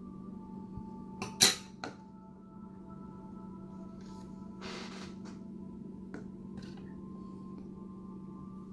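Handling noise at a worktable: a few sharp clicks, the loudest about one and a half seconds in, and a short rustle near the middle, over a steady low hum.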